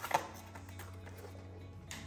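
Quiet background music, with a couple of light clicks just after the start from hands handling wiring in the foam fuselage.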